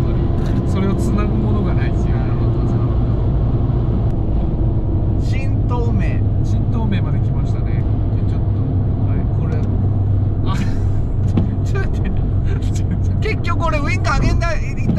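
Steady low drone of a Fiat 500 1.2's small four-cylinder engine and its tyres, heard inside the cabin at constant expressway cruising speed.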